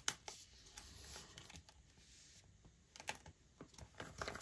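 Photocards and binder pages being handled: a few faint clicks and taps, with light rustling in between. The clicks come near the start and twice more a little before the end.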